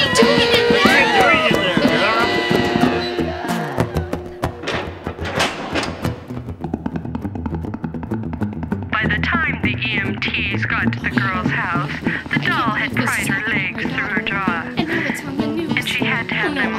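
Music with voices over it. It thins to a few scattered clicks about four seconds in, then wavering voices come back in from about nine seconds.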